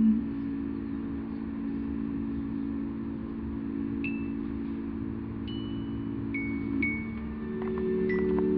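Piano accordion holding a sustained chord, with a few single high bell-like notes ringing out over it from about halfway through, and the chord changing near the end.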